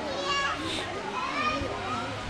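Young children's voices calling and playing, high-pitched and gliding up and down, with a short shrill squeal about a second in.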